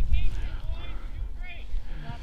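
Faint, distant voices calling out on a soccer field, a few short shouts over a low steady rumble.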